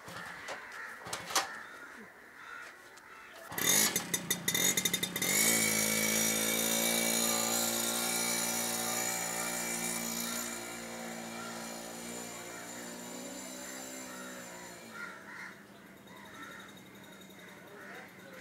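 Small motorcycle engine started with a brief sputter, then running steadily as the bike pulls away; it grows quieter and fades out a few seconds before the end.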